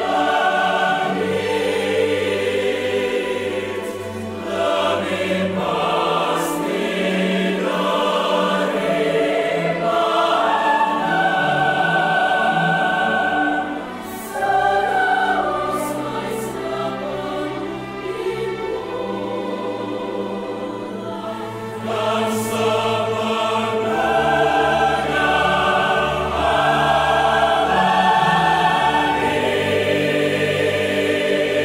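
Mixed choir singing in full voice with orchestral accompaniment, strings prominent; the sound dips briefly about halfway through before the voices swell again.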